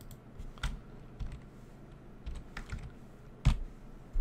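A few scattered keystrokes on a computer keyboard as a line of code is edited, the loudest about three and a half seconds in.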